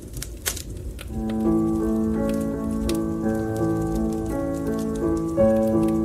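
Crackling fire with a low rumble and scattered sharp pops. About a second in, slow music of long held chords starts over the crackle and becomes the loudest sound.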